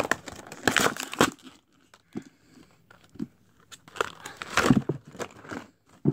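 Toy blister-pack packaging, cardboard backing card and clear plastic tray, being torn open and crinkled by hand: a burst of tearing and rustling in the first second or so, a quieter stretch, then more crinkling and tearing about four to five seconds in.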